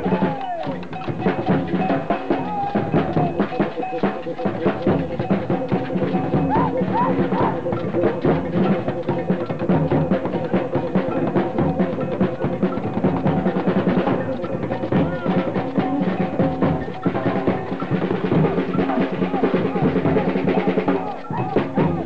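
Street drum circle: several stick-played drums beaten together in a fast, steady rhythm, with crowd voices mixed in.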